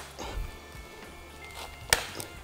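Faint background music. Near the end comes a single sharp snip as cutters cut through a plastic cable tie.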